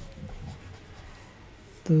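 Faint scratching of a stylus writing strokes of handwriting on a tablet, with a voice starting to speak near the end.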